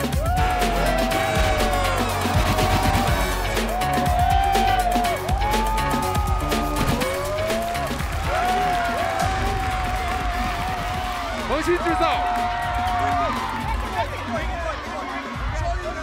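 Loud battle music with a heavy bass beat and sharp percussion, with drawn-out voices calling over it again and again.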